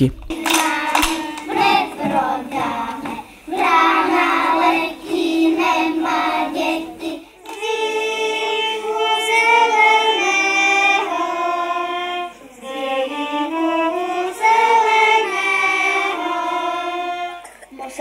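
Children's folk ensemble singing a folk song, with hand-clapping through the first part. After an abrupt cut about seven seconds in, the children sing with two violins accompanying.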